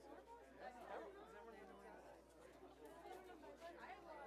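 Faint, indistinct chatter of many people talking at once, with no single voice standing out.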